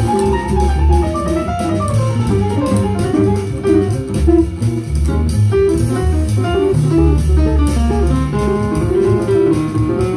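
Small jazz group of upright bass, guitar, piano and drums playing, with the bass in the low end, a melodic line moving above it and steady cymbal strokes.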